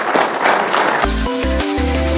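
Audience applauding, cut off abruptly about a second in by electronic music with a deep, heavy bass line and a stepping synth melody.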